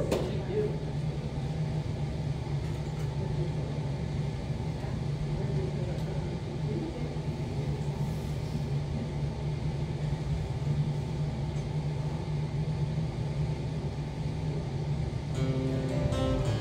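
A steady low hum runs through the room. Near the end an acoustic guitar begins to play.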